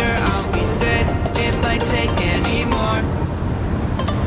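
Background pop music with a melodic lead line over a steady bass.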